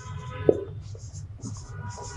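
Marker pen writing on a whiteboard: short, scratchy strokes come and go as a word is written, with one sharp tap about half a second in.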